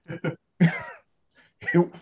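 Brief laughter: a few short voiced breaths, then one louder burst of laughing, before talking resumes.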